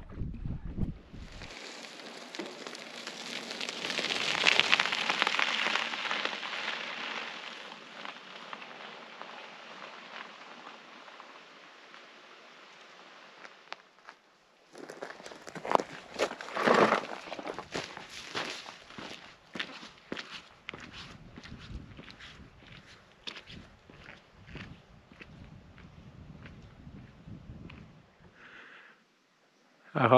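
A steady rushing noise that swells and fades over the first half. Then footsteps of a hiker crunching over rock and gravel, irregular steps with a louder scrape about 17 seconds in.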